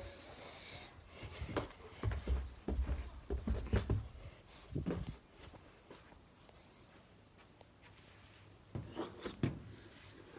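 Muffled thumps and rubbing from a handheld phone carried while walking barefoot on carpet. The thumps come irregularly for a few seconds, fall quiet, and return briefly near the end.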